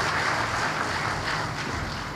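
Audience applauding in a large hall, the clapping thinning out toward the end.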